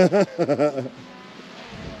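A man's voice laughing in short repeated bursts during the first second, then a quiet outdoor background with a low wind rumble on the microphone near the end.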